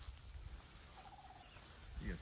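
A bird's short, faint rattling call about a second in, over a low rumble of wind or phone handling.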